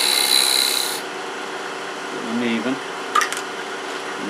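Small parting tool cutting into wood spinning on a lathe, a hiss of cutting for about the first second, then the lathe running on steadily with the tool lifted off. A few sharp clicks sound about three seconds in.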